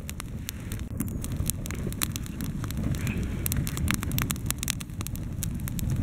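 Small twig campfire crackling, with many sharp pops scattered over a low steady rush of flame, as a wax-coated cotton torch burns in it.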